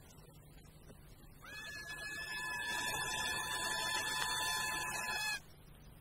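A steady high tone, two pitches held together with no wavering. It enters about a second and a half in, swells over the next second or so, and cuts off suddenly near the end.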